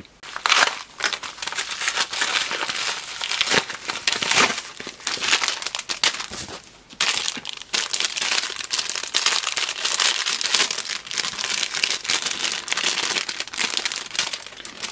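Clear plastic bag crinkling and rustling as it is handled and opened by hand, in irregular bursts with a short lull about six to seven seconds in.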